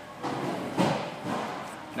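Handling noise of metal tools: a spark plug socket on its extension, holding the loosened plug, being drawn up out of the plug well. It makes about a second and a half of irregular scraping and light knocks.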